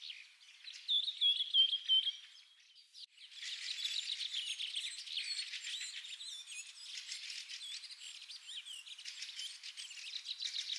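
Birdsong: small birds chirping and trilling. A louder run of whistled notes comes about a second in, then a short lull near three seconds, then a dense chorus of chirps.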